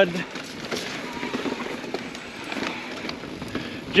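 Mountain bike riding down a rocky, rooty dirt trail: steady tyre and trail noise with the small knocks and rattles of the bike over rocks and roots.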